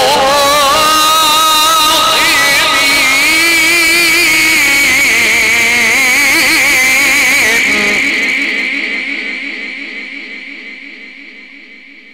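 A Quran reciter's amplified voice holding a long, ornamented melodic phrase in the mujawwad style, its pitch wavering and turning. He stops about eight seconds in, and the phrase trails away in the sound system's echo.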